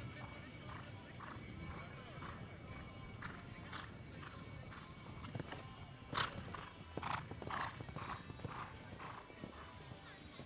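Horse cantering on a sand arena: a rhythmic beat of about two strides a second, louder between about six and eight seconds in.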